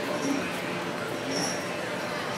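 Background crowd ambience: a steady wash of distant, indistinct voices and general bustle, with a few short, faint high chirps.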